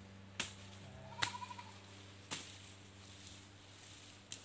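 Hand clearing of cane-like stalks: three sharp chopping strikes about a second apart. Right after the second strike comes a short, wavering animal bleat.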